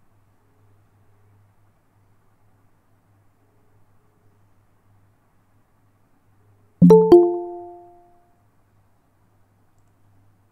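Google Meet's join-request notification chime, about seven seconds in: two quick bell-like notes a quarter second apart that ring out and fade over about a second, signalling that someone is asking to be admitted to the call.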